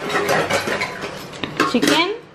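Dishes and utensils clattering on a stone counter, with a quick run of clicks and scrapes as a plate is shifted and a steel pot is handled.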